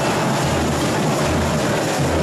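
Samba school percussion band playing a steady bass-drum beat about twice a second, under a loud, dense wash of crowd noise.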